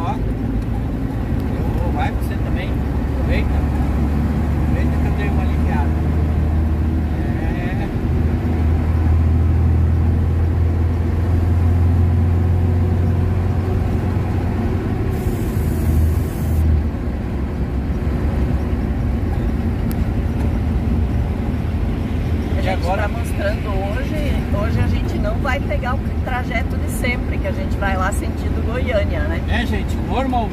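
Truck engine and road noise heard inside the cab while driving, a steady low drone that grows stronger for several seconds in the middle. A short high hiss comes about halfway through.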